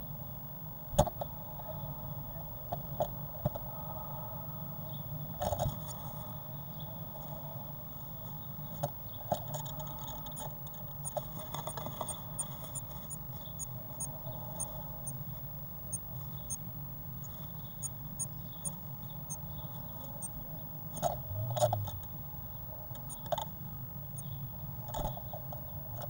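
Blue tit moving about inside a wooden nest box, with scattered sharp taps and scratches over a steady low hum.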